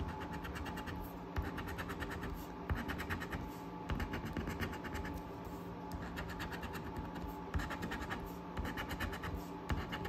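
A coin scraping the coating off a paper scratch-off lottery ticket on a wooden tabletop, in runs of quick back-and-forth strokes with brief pauses between them.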